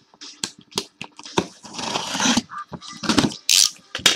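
A cardboard case being opened by hand: a stretch of tearing, like tape or cardboard ripping, about midway, among scattered clicks and knocks of handling.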